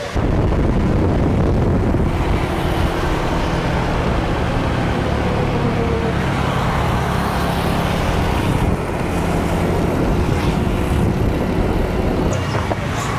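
A moped's small engine running steadily at cruising speed, heard from the rider's seat with wind and road noise rushing over the microphone.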